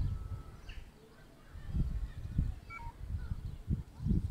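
A few faint, short bird chirps over uneven low rumbling noise on the microphone.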